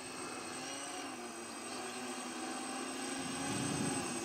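Propellers of a twin-propeller VTOL flying-wing model aircraft droning faintly and steadily in airplane-mode flight as it comes in to land, growing a little louder near the end as it approaches.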